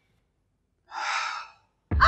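A man's long sigh, a single breathy exhale about a second in. A loud cry cuts in suddenly at the very end.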